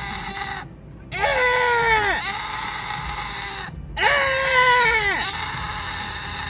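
Goat bleating: two long calls about three seconds apart, each falling in pitch.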